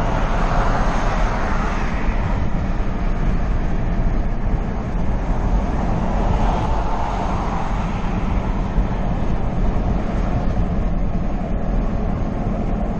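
Steady wind and road noise of a Ford Expedition driving at highway speed, picked up by a camera mounted outside on the windshield: an even rumble and rush with no breaks.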